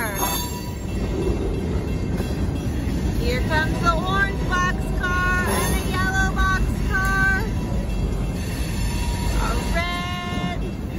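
Freight train's boxcars rolling past, their wheels on the rails making a steady low rumble. From about three to seven seconds in, a run of short pitched notes sounds over it.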